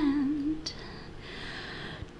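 A woman's voice holds a wavering vibrato note that dips slightly in pitch and ends about half a second in, followed by a quiet pause with a faint click.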